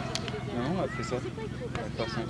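Distant voices of footballers calling out across the pitch, in rising and falling cries, with a short sharp knock just after the start.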